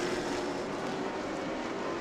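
Stock cars' engines running at speed around the track, a steady drone with no sudden events.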